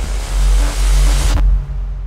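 Electronic intro sound design for an animated logo reveal: a loud noisy whoosh over deep bass that cuts off sharply about one and a half seconds in, leaving a low bass tail that slowly fades.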